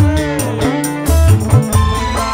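Live campursari dangdut band playing an instrumental passage: an electric guitar carries the melody with bent, sliding notes over bass and drums.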